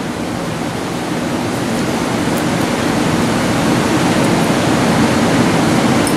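Steady rushing background noise with no breaks, growing slightly louder over the few seconds.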